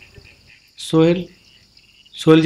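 Steady, high-pitched chirring of insects in the background, with one short spoken word about a second in.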